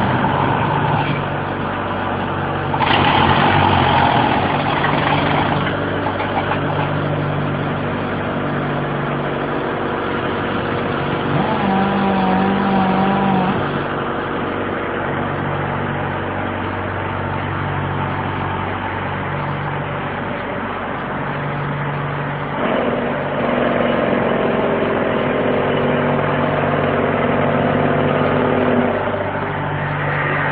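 1987 Sullivan MS2A3 air track drill running steadily under air, a machine drone with a low throb pulsing about every second and a half. Its note shifts a few times, about three seconds in, around twelve seconds and again after twenty-three seconds.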